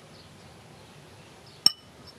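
A single sharp clink of a metal spoon against a ceramic bowl about two-thirds of the way in, ringing briefly, over a quiet background.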